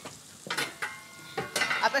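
Food frying in a pan, a low sizzling hiss, with a few sharp clinks and knocks of kitchenware.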